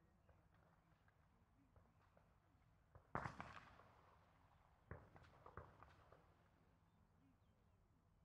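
Near silence, broken by a few faint sharp impact sounds: one at about three seconds with a short ringing tail, then a small cluster of three or four around five to six seconds.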